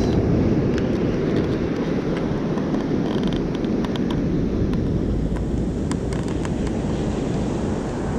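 Wind noise on the microphone over the steady wash of sea surf, with a few faint clicks in the middle.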